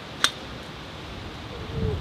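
A single sharp click about a quarter second in, over a steady background hiss.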